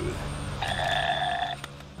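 Electronic toy dinosaur giving out a short electronic sound from its small speaker, steady in pitch and just under a second long, starting about half a second in, over a faint low hum.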